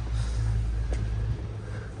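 A steady low droning hum, with a faint tap about a second in.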